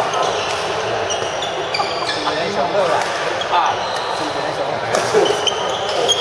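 Badminton rally: racket strokes striking the shuttlecock about once a second, court shoes squeaking on the floor, and voices in the background.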